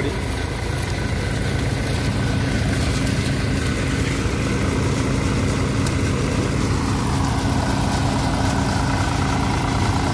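Eicher 368 tractor's diesel engine running at a steady speed, driving a groundnut thresher.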